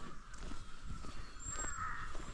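Birds calling in the forest, crow caws among them, strongest near the end, over walking footsteps on a dirt trail.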